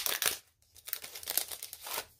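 Clear plastic packaging crinkling as a sheet of enamel dots is handled and pulled out, in two bouts of rustling with a short pause about half a second in.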